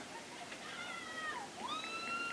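A faint, high-pitched drawn-out cheer from someone in the audience. It starts as a short call that sinks in pitch, then comes back as a longer call that rises about halfway through and holds steady.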